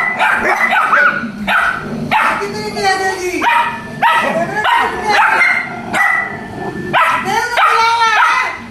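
Pitbull puppies barking and yipping at each other, a quick run of short, high calls that bend in pitch.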